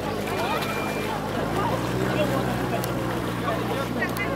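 A motorboat engine running with a steady low drone that grows louder about a second and a half in, under the mixed chatter and calls of many people bathing.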